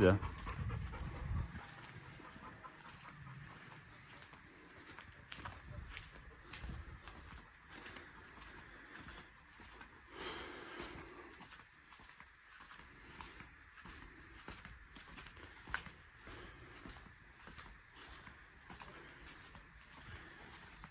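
A German Shorthaired Pointer panting, then faint footsteps on a concrete path, about two steps a second.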